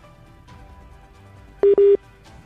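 Faint background music, then near the end a loud, low electronic beep heard as two short back-to-back tones.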